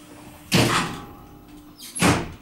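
KONE traction elevator's sliding car doors closing and meeting with a thump about half a second in, with a second thump near the end.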